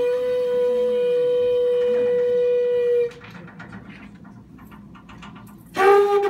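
A small wind instrument played live in a jazz quartet holds one long note for about three seconds and stops. After that only soft band accompaniment is heard, until the lead instrument comes back in with a new, slightly lower note just before the end.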